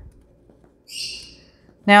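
Plastic squeeze bottle of liquid glue squeezed against paper, giving one short, high hissing sputter about a second in.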